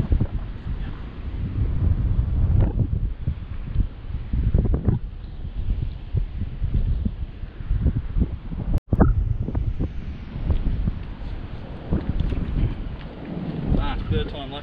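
Strong wind buffeting the microphone: a loud, gusting low rumble with no steady tone, broken by a momentary dropout about nine seconds in.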